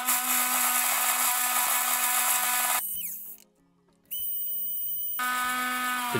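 Atomberg 550 W BLDC mixer grinder running at high speed, grinding cumin seeds in its small stainless-steel chutney jar: a steady motor whine over a high hiss. The sound cuts off abruptly a little past three seconds in and comes back steadily about a second later.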